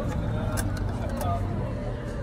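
Street ambience: a steady low rumble of passing traffic with people's voices in the background and a few short clicks.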